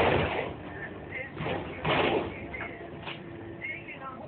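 Container crane working over a ship's hold: a steady machinery hum with two loud rushing bursts about two seconds apart and short squeaks between them.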